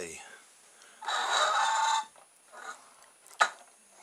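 Small electric motor, salvaged from a lint remover, briefly spinning the car's home-made pizza-tray fan: a steady whirr for about a second that starts and stops abruptly. A sharp click follows near the end.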